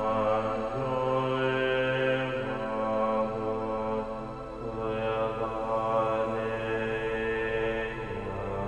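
Background score of sustained, chant-like voices over a low steady drone, swelling and easing without a beat.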